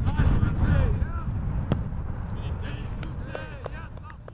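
Footballers' shouts and calls during training, with one sharp strike of a football near the middle and a low rumble of wind on the microphone.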